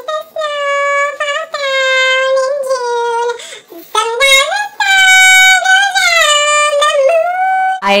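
A woman singing unaccompanied in a high voice: two long phrases of held notes with a short breath between them.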